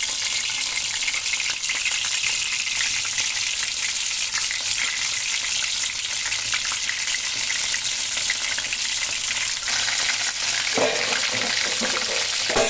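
Pieces of raw jackfruit frying in hot mustard oil in a kadhai: a steady sizzle with fine crackling as more pieces are dropped into the oil.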